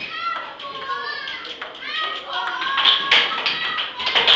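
Table-tennis rally: a celluloid ping-pong ball clicking sharply several times off paddles and the table. High children's voices chatter and call out over it, and are the loudest sound.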